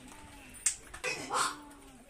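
Faint human voices, with a sharp click just over half a second in and a short, higher-pitched voice sound about a second and a half in.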